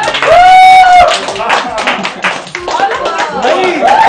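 A group clapping hands along with informal group singing. Near the start a voice holds one long note for about a second, and more voices join in near the end.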